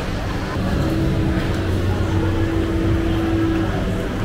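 Busy street-market ambience: crowd chatter over a low rumble, with a steady motor hum that starts about a second in and stops shortly before the end.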